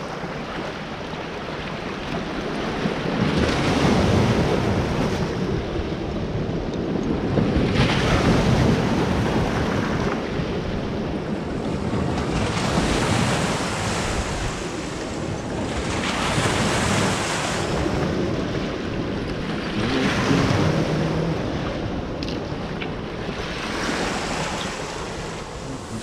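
Small waves washing in and out over a stony foreshore, swelling and fading every few seconds, with some wind on the microphone.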